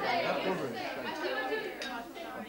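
Many overlapping voices of teenagers chatting over a meal in a large dining hall, with a brief sharp click near the end.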